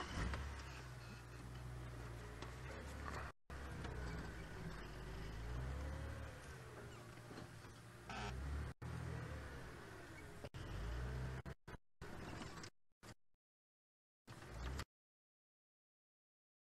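Engine of an open safari vehicle running as it drives slowly off-road along a sandy track, with a low rumble and a faint whine that rises and falls in pitch. The sound cuts out in silent gaps in the last few seconds.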